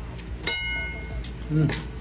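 A single sharp clink of tableware about half a second in, ringing briefly before it fades, followed near the end by a short 'mmm' from someone eating.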